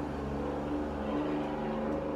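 A road vehicle's engine running outside, a steady low drone that shifts pitch slightly about a second in.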